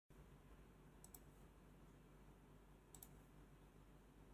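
Near silence: low room hum with two quick double clicks, one about a second in and another about three seconds in.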